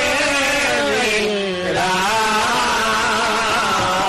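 A male voice singing a long, wordless held note in Sikh kirtan style, its pitch wavering and gliding in ornaments, over harmonium accompaniment.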